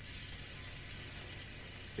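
Faint, steady background drone: an even low hum with hiss and no distinct events.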